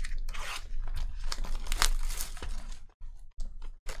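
The wrapping on a sealed trading-card box being torn and crinkled as it is opened. A rustle gives way to a series of sharp crackles and snaps.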